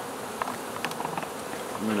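A swarm of honey bees buzzing steadily around and inside a cardboard box that they have just been shaken into, with a few faint light ticks in the first second or so.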